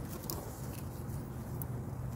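Faint rustling and a few soft clicks as hands work among the leaves and branch of a tangerine tree, peeling away the bark, over a steady low hum.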